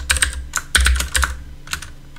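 Typing on a computer keyboard: a quick, irregular run of key clicks that thins out near the end.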